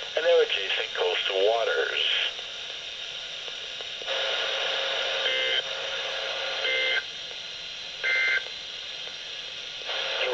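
NOAA Weather Radio receiver sending out the EAS/SAME end-of-message code that closes the required weekly test. A hiss comes up about four seconds in, followed by three short electronic data bursts about a second and a half apart.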